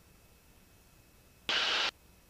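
The aircraft's VHF radio in the headset audio gives a sudden burst of static about one and a half seconds in, lasting under half a second and cutting off abruptly: a squelch break on the ATC frequency. Around it there is only faint intercom hiss.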